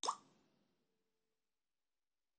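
A single short pop that starts sharply and fades out within about a second, with a faint low tone lingering a little longer.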